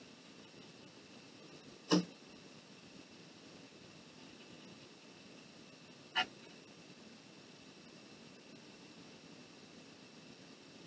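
Quiet room hiss broken by two brief taps, one about two seconds in and a smaller one about six seconds in, from painting tools being handled on a tabletop.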